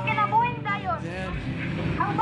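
A person's voice talking loudly and continuously, over low street noise.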